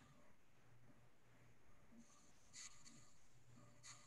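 Near silence: faint room tone from an open conference-call microphone, with a low hum and two or three brief faint rustles or clicks in the second half.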